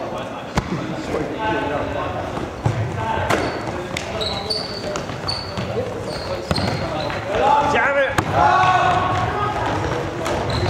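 Players' trainers squeaking and thudding on a wooden sports hall floor as they run and cut, several short squeaks and scattered footfalls, with shouting voices that get louder in the second half, all echoing in the large hall.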